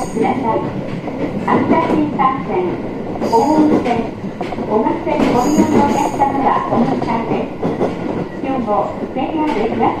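Cabin sound of a 701-series electric train running: steady rolling noise from wheels on rail, with two short high-pitched wheel squeals, about three and a half and five and a half seconds in.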